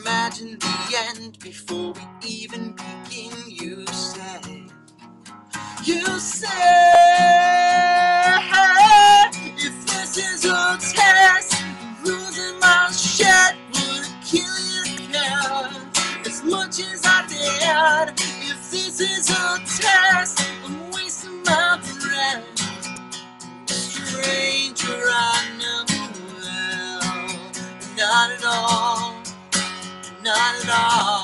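A man singing live over his own strummed acoustic guitar. About six seconds in it gets louder, with one long held sung note.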